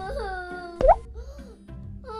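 Children's background music with a cartoon plop sound effect, a quick upward-sliding pop about a second in. After the pop the music drops away to a low level.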